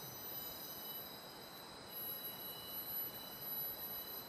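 Rainforest insect chorus: several steady, high-pitched insect tones held over a faint hiss.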